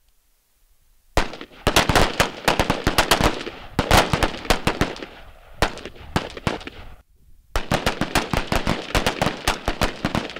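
Several AR-15-style carbines firing rapid, overlapping shots: a dense string of rifle fire starts about a second in, stops short around the seven-second mark, then picks up again.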